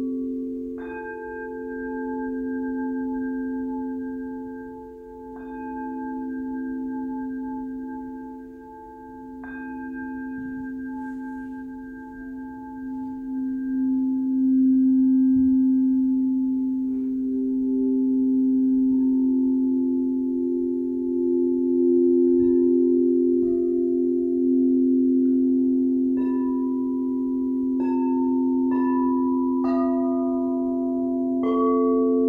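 Frosted quartz crystal singing bowls ringing in long, overlapping sustained tones with a slow, wavering beat. New strikes add higher ringing tones now and then. The sound swells louder about halfway through, and a quicker run of strikes comes near the end.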